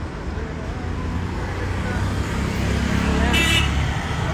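Road traffic passing close by: a low engine rumble that grows louder as vehicles, including a car and a motorbike, drive past, peaking a little before the end.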